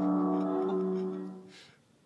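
Music: a held chord of steady tones that fades out near the end.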